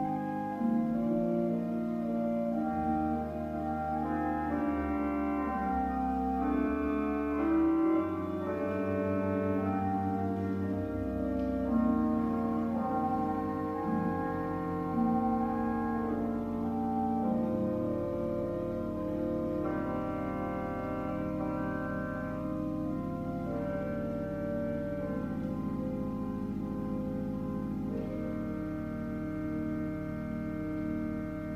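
Church pipe organ playing slow, sustained chords over a low pedal bass, with a single pedal note held steadily through the second half.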